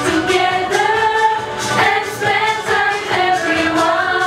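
A group of teenage girls singing a song together, sustained sung notes moving from one pitch to the next without a break.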